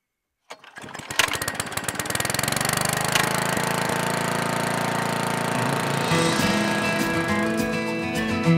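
Lawn mower engine pull-started about half a second in: it catches with a few uneven firing beats, then settles into a steady run. Guitar music comes in over it about six seconds in.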